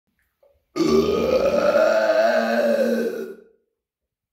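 A man's single long, loud burp, starting just under a second in and lasting close to three seconds at a steady low pitch before fading out.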